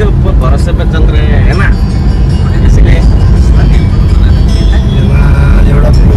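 Steady, loud low rumble of a car on the move, heard from inside the cabin, with people talking over it.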